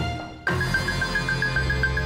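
Dramatic background music. The previous music fades out, and about half a second in a low sustained drone begins under a high tone that pulses about seven times a second.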